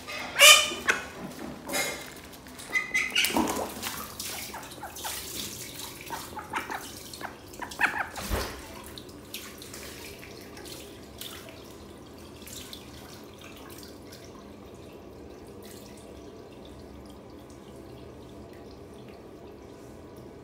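Call ducks quacking loudly a few times in the first seconds, then splashing in shallow water, with small drips and splashes as it settles in the second half.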